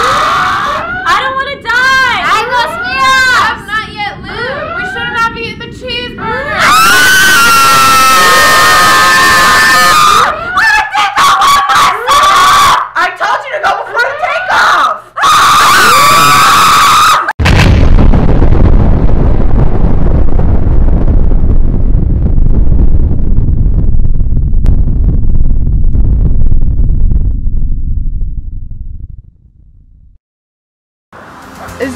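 Several people screaming and shrieking together, very loud in the middle, for about seventeen seconds. Then a deep explosion rumble cuts in suddenly and slowly fades out: a shuttle crash-landing and blowing up.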